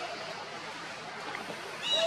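Baby monkey crying: a faint short call at the start and a louder, high-pitched cry near the end.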